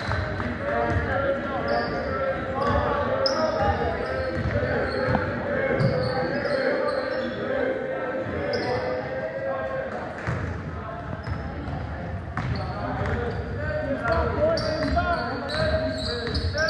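Basketball game sounds in a gym: a basketball bouncing on the hardwood floor, short high sneaker squeaks, and players' and spectators' voices calling out, all echoing in the large hall.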